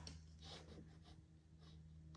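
Near silence: room tone with a steady low hum, and faint rustling as the tag on a plush toy is handled.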